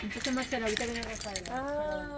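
People talking in conversation, with a few light metallic clinks in the first second around the iron gate.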